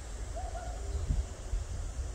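Outdoor ambience: a steady low rumble, with one short, faint, level-pitched call about half a second in.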